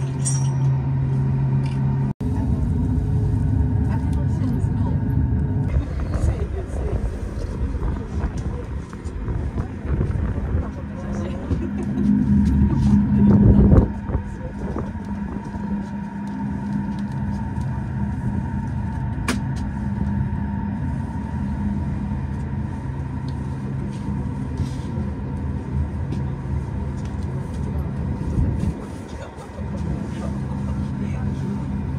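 Steady hum and rumble of an aerial ropeway cabin running along its cables. The rumble swells to its loudest just before the middle of the ride segment, as the cabin passes over a support tower.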